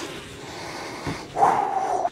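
A man breathing hard with a long breathy exhale, then a louder, rasping breath near the end.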